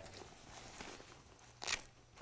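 Faint rustle of a textile motorcycle jacket's cuff being handled, then one short rasping rip about a second and a half in as the cuff's Velcro tab is pulled open.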